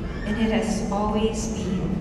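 A woman's voice speaking, with slow, drawn-out phrases and hissing consonants.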